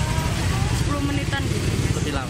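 Motorcycle engine idling close by: a steady low rumble, with people talking over it.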